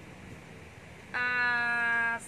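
A woman's voice holding one long, level-pitched "em" that starts about a second in, after a second of low room noise.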